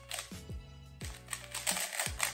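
Rapid plastic clicking of a Rubik's cube's layers being turned quickly during a solve, over background music with a steady beat.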